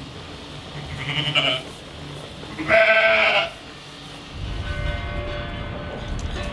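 Sheep (ewes) bleating twice: a short call about a second in, then a longer, louder bleat in the middle. A low rumbling noise follows near the end.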